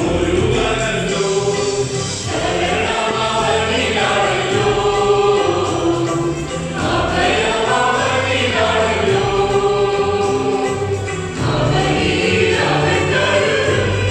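Mixed choir of men and women singing a Malayalam Christian convention hymn in parts, with electronic keyboard accompaniment holding sustained bass notes under the voices.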